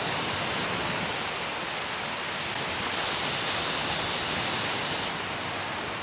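Steady rush of ocean surf breaking on a beach, with a brighter hiss laid over it for about two seconds in the middle.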